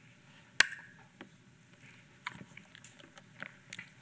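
A plastic water bottle being handled and set down: a sharp knock about half a second in, then faint scattered clicks and crackles over quiet room tone.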